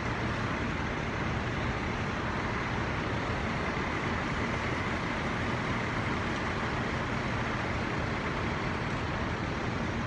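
Steady, even drone of several fire trucks' engines running.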